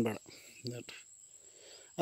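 Crickets trilling in one steady high-pitched tone throughout, with a few short words of a man's speech at the start and again just under a second in.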